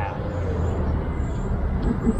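Steady low rumble of city traffic in the background.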